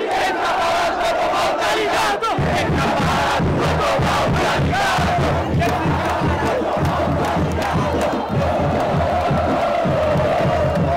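Large crowd of football supporters chanting together in the stands. A low, regular beat joins in about two and a half seconds in.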